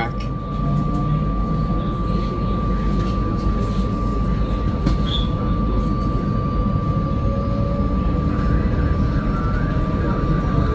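SEPTA electric commuter train running at speed, heard from inside the cab: a steady low rumble of wheels on rail. A thin, steady high whine runs through it.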